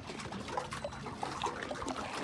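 Faint trickling and lapping of water stirred by a person wading chest-deep, with small irregular splashes.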